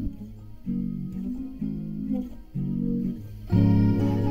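Guitar playing slow low notes or chords, a new one struck about once a second, the last one near the end fuller and louder.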